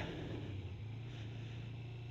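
1997 Kawasaki ZZR250's 248 cc parallel-twin engine running at low speed, a low, steady hum with no change in pitch.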